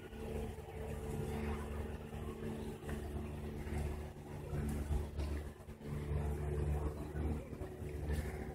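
An engine running steadily, a constant low hum over an uneven rumble.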